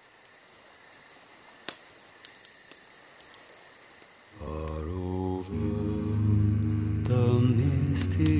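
A few seconds of low background with a single click, then low male voices begin a slow, deep hummed chant about halfway in, held notes over a deeper drone, thickening near the end.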